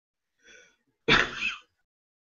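A person sneezing once: a faint catch of breath, then one loud, sudden sneeze about a second in.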